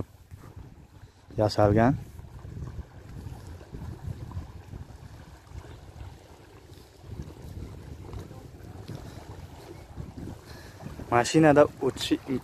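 Wind buffeting the microphone: an uneven low rumbling noise, broken by a man's short words about a second in and near the end.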